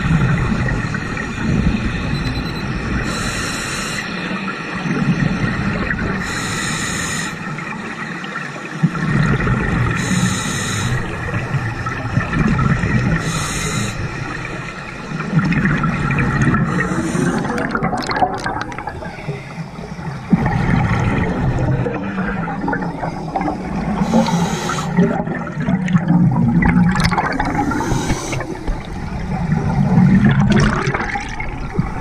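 Scuba diver breathing through a regulator underwater. A short hissing inhale comes every few seconds, each followed by a longer bubbling, gurgling exhale.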